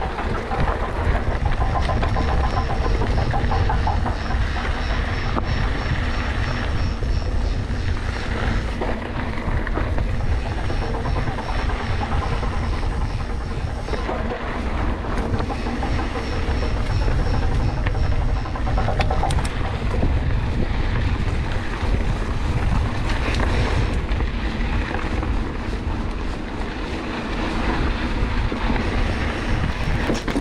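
Santa Cruz Bronson mountain bike rolling down a rocky dirt trail: steady, rumbling wind buffeting on the bike-mounted camera's microphone, with tyre noise and rattling from the bike over the rough ground.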